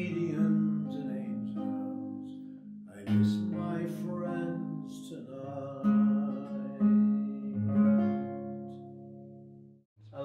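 Man singing the slow closing line of a folk ballad over a nylon-string classical guitar, with chords struck under the held notes. The last chord rings out, fades and stops just before the end.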